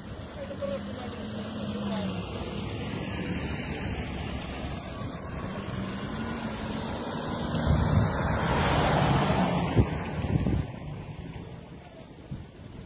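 Car driving past close by on a road, its engine and tyre noise swelling to a peak about eight seconds in and fading away near the end, over a background of traffic.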